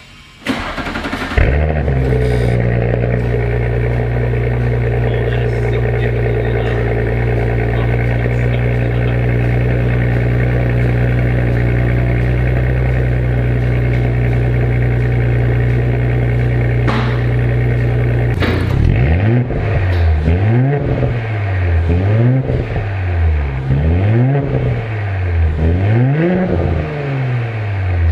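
2018 Audi S4's turbocharged 3.0-litre V6 cold-starting through aftermarket Frequency Intelligent front exhaust pipes with the exhaust valves open. It cranks briefly, catches with a flare, then settles into a loud steady idle. Over the last third it is revved up and down about six times, the note rising and falling with each rev.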